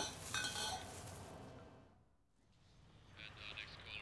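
Faint room sound fading away to near silence about two seconds in, then faint, indistinct higher-pitched sounds returning near the end.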